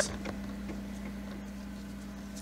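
A low steady hum.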